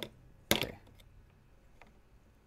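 A single sharp knock about half a second in, hard metal printer parts being handled and set against the countertop, followed by a faint tick or two.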